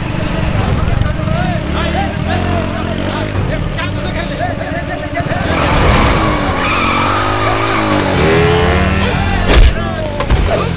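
Motorcycle engine revving as the bike skids and slides over a dirt surface, with the revs rising and falling. A sharp loud hit comes near the end.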